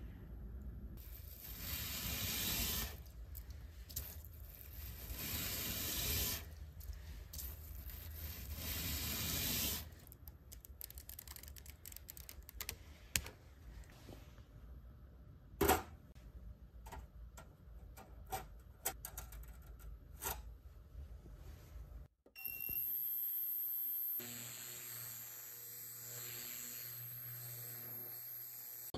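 A Scotch-Brite scouring pad rubbed over a two-tone Rolex Datejust bracelet in three long strokes, refreshing its brushed finish. Then come scattered light clicks and taps. In the last few seconds a VEVOR ultrasonic cleaner runs with a steady hum.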